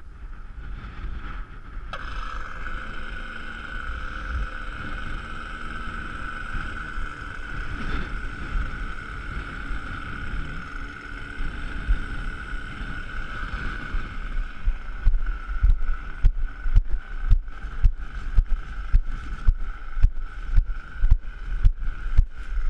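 Strong wind buffeting the microphone, with a steady high whine that switches on suddenly about two seconds in. In the last third, regular knocks about one and a half a second from the camera being carried at a walk.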